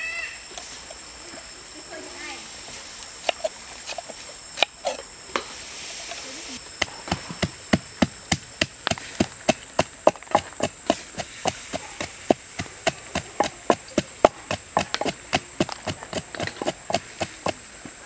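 Snails roasting in their shells on a wire grill rack, crackling and popping in sharp irregular clicks, about three a second, from about six seconds in. Before that, only a few scattered clicks.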